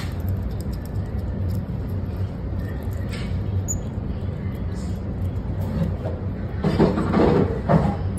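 A steady low hum with scattered faint clicks, and a louder, noisier burst about seven seconds in.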